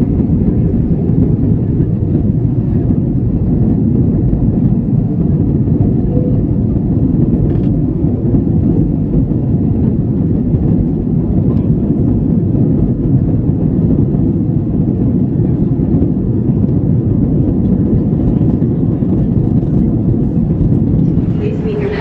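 Jet airliner cabin noise during takeoff and climb-out, heard from a window seat: a steady, loud low roar of engines and rushing air.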